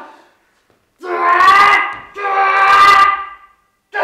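Two long, loud held cries from a human voice, each a little over a second, after a short silence.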